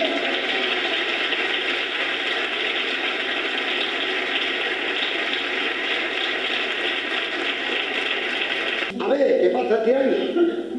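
Audience applauding, a steady round of hand clapping that stops about nine seconds in, when a man's voice begins.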